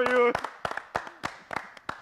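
A small group of people clapping their hands, a short ragged round of applause that thins out and fades toward the end.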